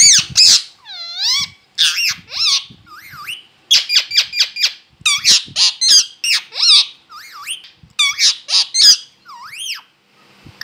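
Parakeet calling: a quick string of short, shrill squawks and squeaks that sweep up and down in pitch, several a second, with a brief softer stretch about three seconds in.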